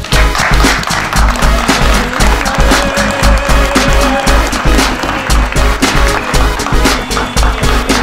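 Background music with a steady bass beat. A noisy wash lies over it for the first few seconds.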